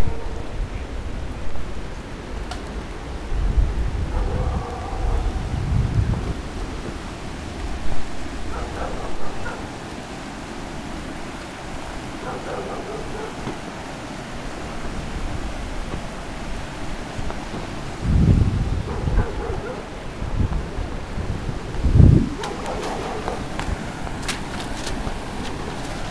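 Wind buffeting a phone microphone in a few short, low rumbles over a steady wash of outdoor noise, with faint voices now and then.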